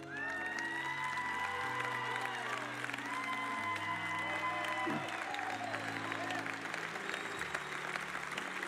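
An audience applauding over soft background music of held chords that change every second or two; the clapping starts at once and runs on steadily.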